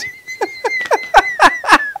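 A man laughing heartily: a quick run of short falling pulses, about six a second, over a high, held squealing tone.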